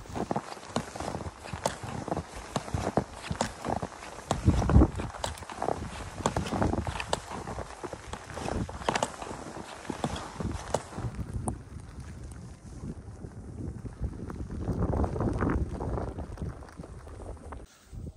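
Crunching, step-like strokes of a splitboard skinning uphill through fresh powder: the skins sliding forward in the skin track and the poles planting in the snow, in an uneven stride that eases off for a few seconds in the middle.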